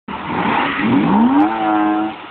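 A BMW car engine being revved: a rough, loud rumble, then the pitch climbs steeply about a second in and holds high and steady near the end.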